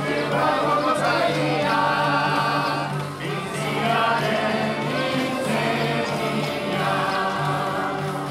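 Live folk dance music played by several fiddles in unison, a wavering melody over a steady low drone.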